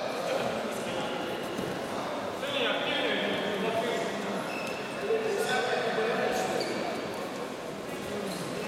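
Indistinct voices and calls, echoing in a large sports hall over a steady hubbub.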